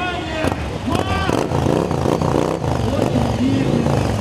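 Several motorcycle engines running, with a crowd talking over them.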